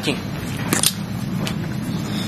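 A few short, hard plastic clicks as a glass-fibre-modified nylon belt clip is lifted off a candle and handled, over a steady low background noise.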